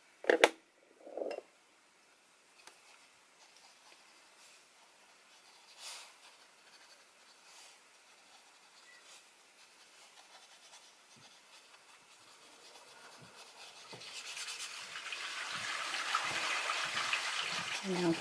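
Water running down through the plumbing from the floor above, a hissing rush that swells steadily over the last six seconds. Two short sounds come in the first second or so.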